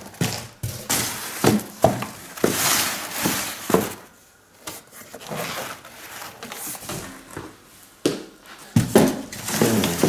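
Corrugated cardboard dividers and box flaps being shifted and rubbed against each other inside a large cardboard shipping box: irregular scraping, rustling and knocks, with a brief lull about four seconds in.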